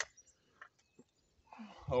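A few faint knocks as a single-shot shotgun is lowered and laid down on a wooden table, in otherwise near-quiet outdoor air.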